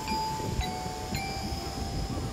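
Metal bars of a xylophone bridge railing struck in turn with a mallet: two new notes about half a second apart, each ringing on over the one before, over a low steady rumble.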